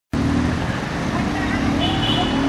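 Busy outdoor background: a steady low rumble like distant traffic, with voices and a few faint short chirps mixed in.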